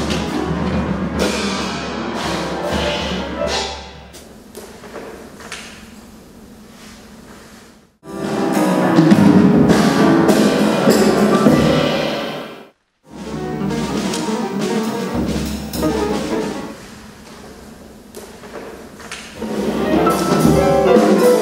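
Upright piano and drum kit playing together, swelling and thinning in loudness. The music breaks off to silence twice, briefly, about eight and thirteen seconds in.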